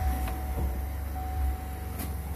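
The 2021 Chevy Silverado's 3.0 L Duramax inline-six turbodiesel idling just after start-up, heard from inside the cab as a steady low rumble, with a thin steady whine over it.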